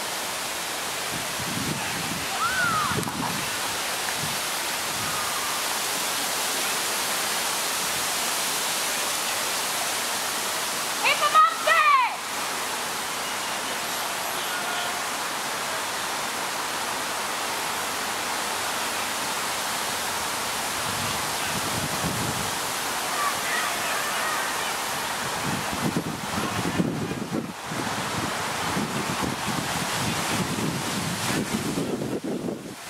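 Steady wind noise on the microphone with faint, distant shouts from players and onlookers on the field; one louder shout stands out a little before halfway.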